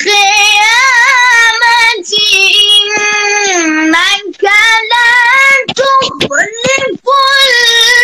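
Melodic Quran recitation in maqam style: one high voice drawing out long, ornamented vowels that bend and waver in pitch, with quick up-and-down swoops a little before the seventh second. The voice breaks off briefly about two, four and seven seconds in.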